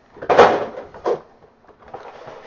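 Cardboard model-kit box being handled and set on a table: a loud scrape of cardboard sliding, then a shorter scrape about a second in.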